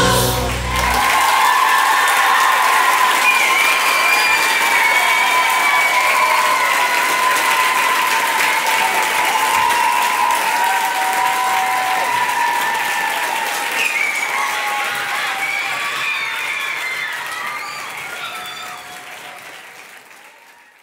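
The band's last chord stops in the first second, and then a theatre audience applauds with voices calling out over the clapping. The applause fades away toward the end.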